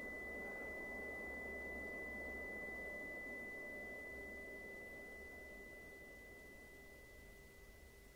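A steady high-pitched ringing tone from the film's sound design, over a faint low hum, slowly fading out.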